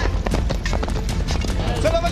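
Clatter of horses' hooves and knocks in a mock cavalry battle, a dense run of short hits, with men shouting near the end.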